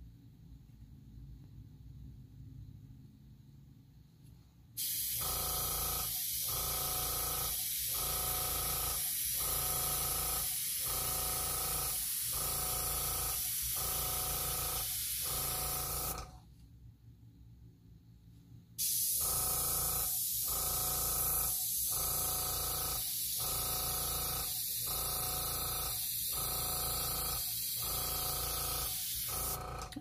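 Airbrush run from an air compressor blowing air in two long stretches, a steady high hiss with a mid-pitched tone beneath it that pulses about one and a half times a second, starting about five seconds in and stopping briefly near the middle. The air is pushing alcohol ink across the paper to draw long petals.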